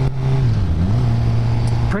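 Suzuki GSX-R sportbike's inline-four engine running steadily while riding, heard with wind rush. Its note dips briefly about half a second in and comes back up.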